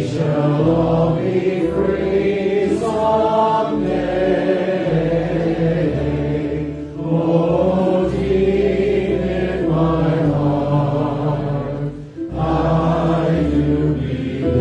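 Male voices singing a worship song live over strummed ukulele and acoustic guitars. The sung phrases break briefly about seven and twelve seconds in.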